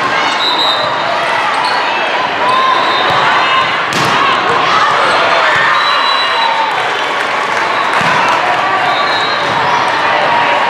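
Busy din of an indoor volleyball hall: many players and spectators shouting and calling over one another, with volleyballs being hit and bouncing on the courts. A sharp smack about four seconds in is the loudest single sound.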